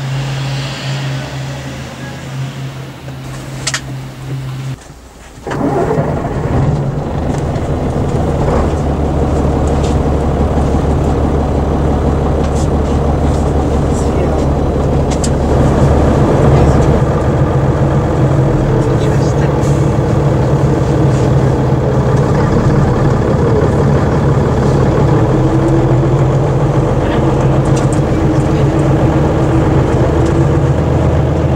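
Diesel engine of an Ikarus EAG E95 coach idling with a steady hum beside the rear wheel, cutting off about five seconds in. After that comes the louder, steady drone of the same coach's engine heard from inside the passenger cabin.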